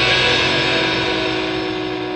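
Rock band's closing guitar chord, several held notes ringing and steadily dying away as the song ends.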